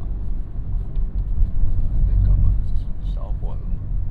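Steady low road and engine rumble inside a moving car's cabin at freeway speed, with faint talking over it.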